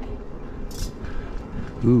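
Steady low rumble of an electric bike ride: wind and road noise on the microphone, with a short hiss about three quarters of a second in. A voice says "Ooh" at the very end.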